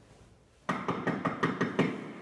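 Quick footsteps on a hard hallway floor, about six strikes a second, starting suddenly after a short hush.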